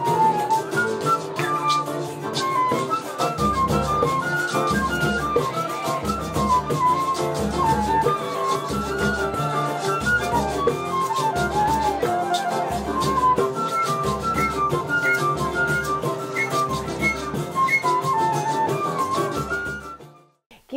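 Live choro played by a small acoustic ensemble: a transverse flute carries a quick melody over acoustic guitar accompaniment. A steady low bass pulse, about once a second, joins about three and a half seconds in, and the music cuts off abruptly at the end.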